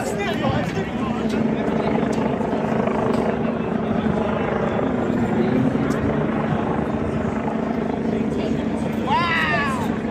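Helicopter overhead, a steady drone, over the chatter of a crowd.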